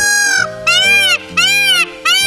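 Male Indian peafowl calling: three loud, high calls in quick succession, each arching up and then down in pitch. Background music plays underneath.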